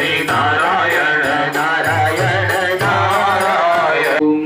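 Hindu devotional song sung by a voice with drum accompaniment and a steady beat of small percussion.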